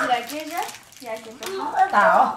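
Only speech: voices talking, with no other distinct sound.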